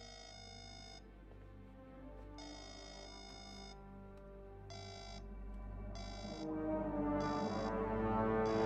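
Mobile phone alert tone chiming again and again, the first two lasting about a second and the later ones shorter and quicker, over background film score that swells louder toward the end.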